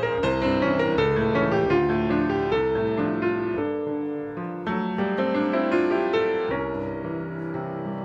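Steinway grand piano played solo: sustained chords under a melody line, a little softer near the end.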